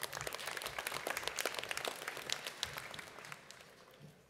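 Audience applauding: dense clapping that starts right after the name is called and fades away over the last second.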